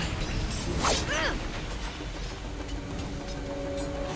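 Cartoon soundtrack from a TV episode: a character's short cough-like vocal sound about a second in, then sustained music notes setting in near the end.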